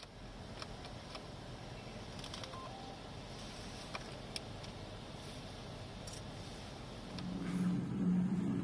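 Steady street and traffic noise with a few faint clicks. About seven seconds in, a louder low engine rumble comes in, from a tracked armoured vehicle driving down the street.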